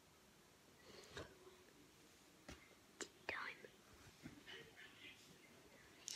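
Near silence, broken by a few faint clicks and soft rustles of trading cards being handled, with faint whispering.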